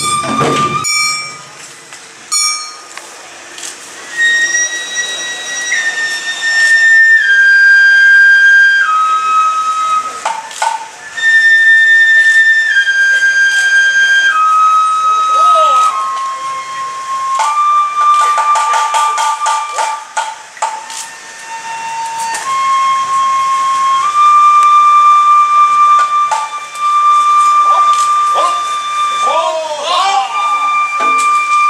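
Japanese bamboo flute playing a slow melody of long held notes that step down in pitch and then climb again, with scattered sharp percussive clicks.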